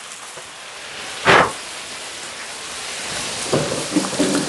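Potatoes frying in hot oil, a steady sizzle with one short louder spurt of hissing about a second in.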